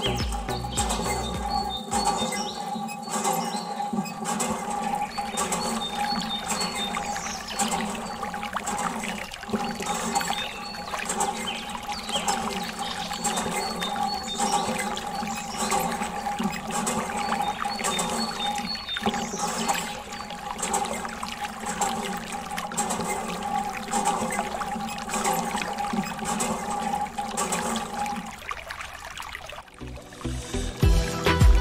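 Background music with steady sustained tones, over water pouring and trickling from the spout of a miniature hand pump into a small toy pond. The music drops out shortly before the end.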